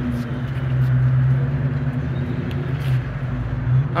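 A car engine running steadily, a low even drone that swells slightly after the first half second and holds until the end.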